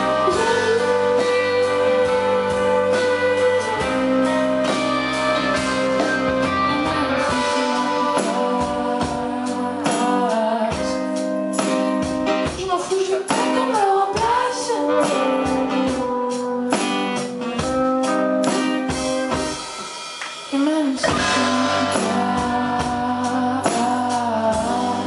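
Live rock song: a woman's lead vocal, held notes and sliding phrases, over strummed acoustic guitar and a full band with sharp percussive hits.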